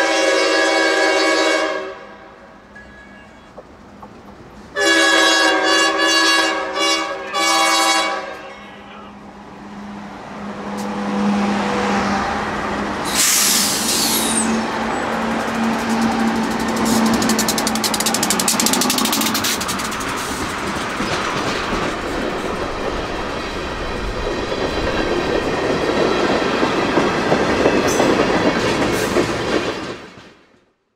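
Diesel freight locomotive's Nathan K5H air horn sounding for a grade crossing: a long blast that stops about two seconds in, then a second sounding broken into short blasts from about five to eight seconds in. The locomotive then passes close by with a rising engine rumble and a brief hiss, and a string of tank cars follows, rolling by with a steady clickety-clack of wheels over the rail joints.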